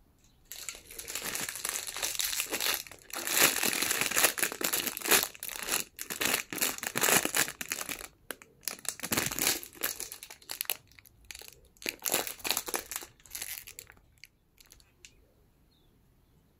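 Clear plastic wrapping crinkling as it is handled and pulled off a ring light, in a long run of loud, irregular crackles that dies away about two seconds before the end.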